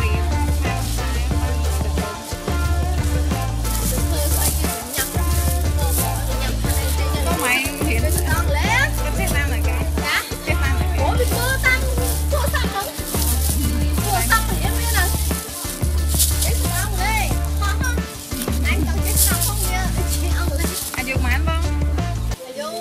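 Background music with a steady, heavy bass beat.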